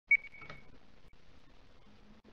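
A single short, high-pitched ding about a tenth of a second in, ringing on faintly for about half a second, followed by faint room tone.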